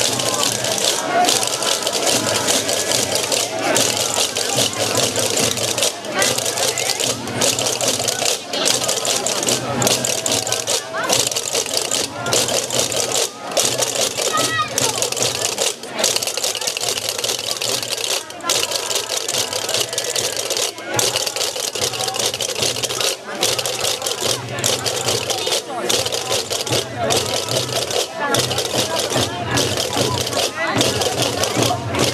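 Massed chácaras, the large Gomeran castanets, clattering without a break, with hand drums beating and a crowd's voices around. The clatter stops for a moment about every two and a half seconds, marking the dance's phrases.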